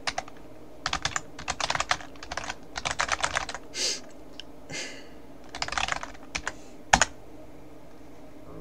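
Typing on a computer keyboard: irregular bursts of quick key clicks with short pauses between them, and one louder clack about seven seconds in.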